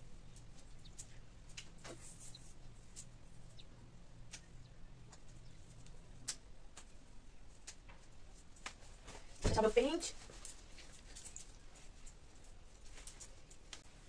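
Faint scattered clicks and handling as snap clips of a clip-in hair extension are fastened into hair, with one short voiced sound about nine and a half seconds in.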